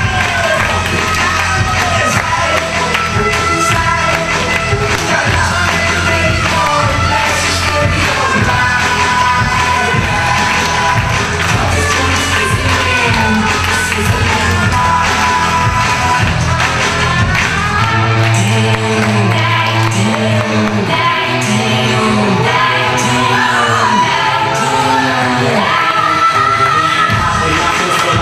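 Loud pop music with singing and a steady beat. About two-thirds of the way through, the track changes to a repeated swooping low note.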